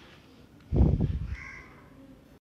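A crow cawing once, about three-quarters of a second in, a harsh call that trails off within about a second.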